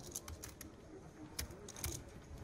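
Poker chips clicking together as they are handled at the table: a few sharp clicks, the loudest about one and a half seconds in and just before the end.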